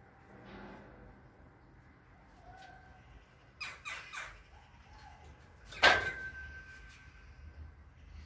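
Loaded barbell knocking against the steel hooks of a power rack as it is set up and unracked: a few light clicks, then one loud metal clank just before six seconds in that rings on for about a second.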